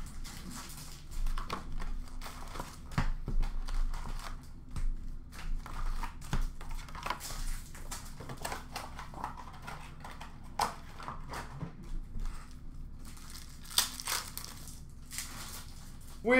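Hockey card packs being torn open, their wrappers crinkling and crackling in irregular rustles, as the cards inside are pulled out and handled.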